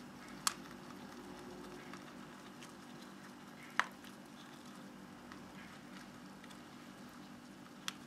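Faint room tone with a low steady hum, broken by a few sharp clicks. The loudest click, near four seconds in, is a veiled chameleon striking at mealworms in a thin plastic cup, and the others are the same cup ticking.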